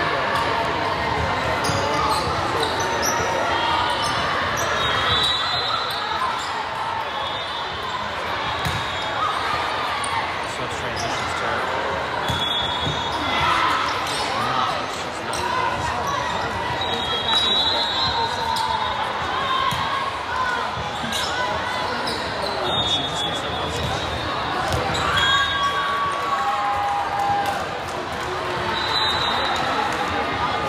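Indoor volleyball rally in a large, echoing gym: the ball being struck and bouncing, sneakers squeaking on the hardwood court, and a steady chatter of players' calls and spectators' voices.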